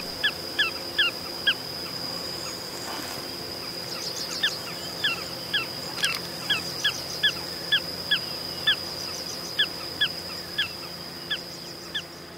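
Small pratincole calling: short, sharp, downward-slurred notes repeated about two to three a second, a brief run at the start and then a longer series from about four seconds in, over a steady high-pitched whine.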